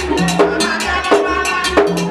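Vodou ceremonial drumming: drums with a struck bell keeping a steady, repeating rhythm for the dancing.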